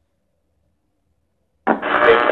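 Near silence, then near the end a Skullcandy Air Raid Bluetooth speaker plays its short power-on sound as it is switched on, starting abruptly and loudly.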